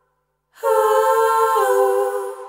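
Short musical sting: after a brief silence, a held chord, hummed or sung in tone, starts suddenly about half a second in, its lower note dipping in pitch near the end before it starts to fade.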